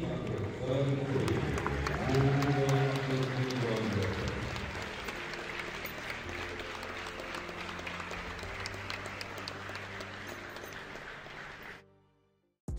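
Audience applauding, with a background music track of held chords under it during the first few seconds. The clapping slowly thins and fades out just before the end.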